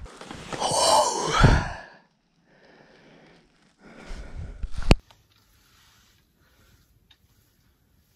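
A man's long, loud sigh, then a softer breath about four seconds in that ends in a sharp click.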